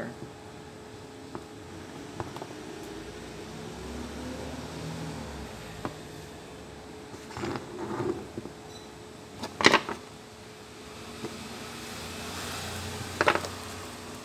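Handling noise from a washing-machine control board as it is worked on, turned over and set down on a wooden bench: a few light clicks, then several short, louder knocks, the loudest about ten seconds in, over a faint steady hum.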